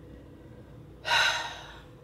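A woman lets out one loud, heavy sigh about a second in, fading out within a second: a weary breath of stress and overwhelm.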